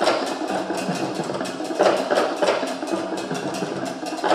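Live percussion music: drums and sharp wood-block-like strikes in a quick, steady beat, with some low held notes underneath.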